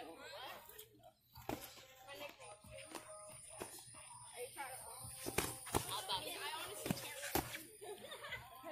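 Indistinct talking over music, broken by several sharp, irregularly spaced smacks of padded boxing gloves landing, most of them in the second half.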